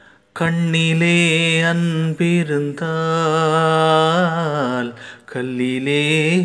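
Male playback singer's voice singing a Tamil film song in long held, wavering notes. The voice comes in about half a second in and breaks off briefly about five seconds in.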